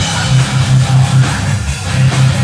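Live heavy metal band playing: distorted electric guitars and bass on a low repeated riff at about five notes a second, with a drum kit.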